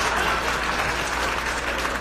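Live audience applauding, a dense patter of many hands clapping.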